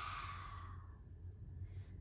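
A woman's long, deep exhale through the open mouth, a sigh-like breath out in a yoga breathing exercise, fading away over about the first second.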